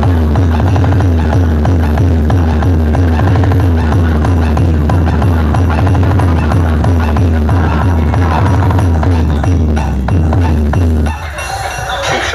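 Very loud electronic dance music from a DJ sound-box rig, with a heavy pulsing bass line under a fast repeating riff. About eleven seconds in, the bass drops out and the level falls.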